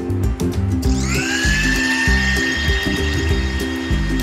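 Electric mixer grinder starting up about a second in: its motor whine rises quickly, then holds steady as it grinds the wet masala. Background music plays throughout.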